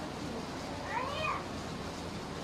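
A single short, high-pitched call about a second in, rising then falling in pitch over about half a second, like a meow.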